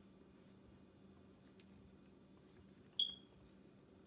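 A metal fork clinking once against a dinner plate about three seconds in, a sharp click followed by a short high ring, over a quiet steady low hum of room tone.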